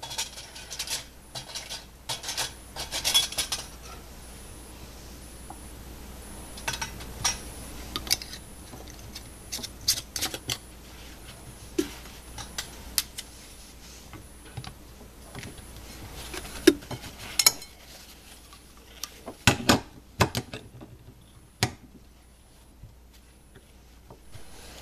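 Metal canning lid and screw band being set on a glass jar and twisted down: scattered light clicks and scrapes of metal on glass, with a cluster of louder clicks near the end.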